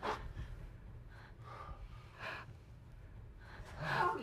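People breathing and gasping in about five short bursts over a low steady room hum.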